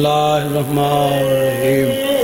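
A man's voice intoning one long, steady chanted note into a microphone, holding the same pitch and stopping at the end.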